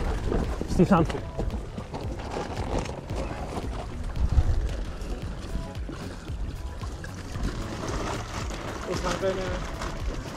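Footsteps of boots walking on dry, packed dirt, uneven and irregular, with a brief voice about a second in.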